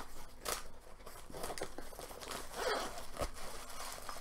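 Handling noise from a small item being opened: a run of short rasping scrapes and rustles, with a sharp one about half a second in and a small click near the end.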